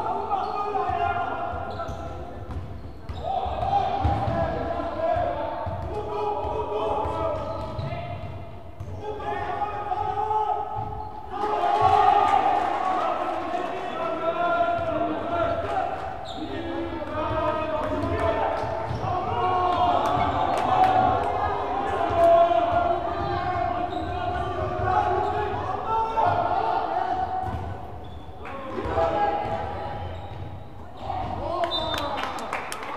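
Basketball game in a reverberant gym: a ball bouncing on the hardwood court and players' feet, under spectators' voices shouting and cheering, loudest about midway and again toward the last third.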